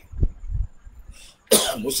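A man clears his throat with a short low sound near the start, then gives a sharp cough about three quarters of the way in and goes straight back into speaking.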